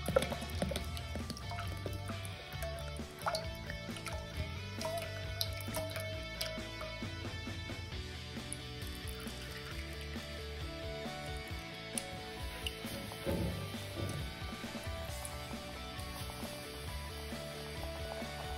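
Background music, with cooking oil being poured from a plastic bottle into a stainless steel pot in the first few seconds.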